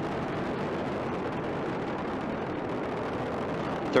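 Steady, even rumble of a Space Shuttle's rocket engines and solid rocket boosters during ascent, about half a minute after liftoff.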